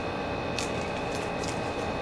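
Steady background hum, like a fan or air conditioner, with a faint high tone in it and a few faint light clicks.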